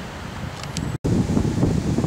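Wind buffeting the camera microphone, a low rumbling noise that drops out for an instant about halfway through and comes back louder.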